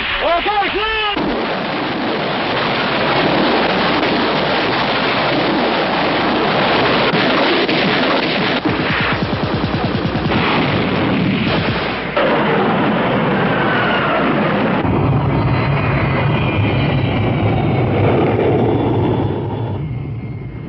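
Battle sounds: a continuous din of gunfire and artillery explosions. A low steady drone joins in about three-quarters of the way through.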